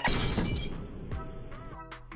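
A glass-shatter crash, sudden and then fading over about half a second, laid over background music, marking a plasma TV screen being struck and cracked. It is most likely an added sound effect rather than the original broadcast audio.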